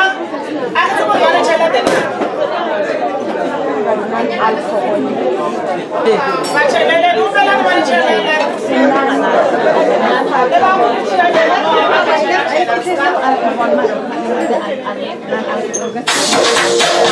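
Overlapping voices of many people talking at once: crowd chatter.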